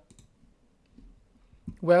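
A single sharp computer mouse click, then a quiet stretch with faint small handling sounds, before a man's voice starts near the end.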